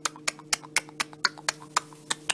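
Horse in its stall making a rapid, even run of sharp clicks, about six or seven a second, over a steady low hum.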